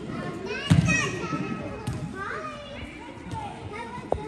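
Several high-pitched voices calling and shouting over one another, with a brief thud a little under a second in that is the loudest moment.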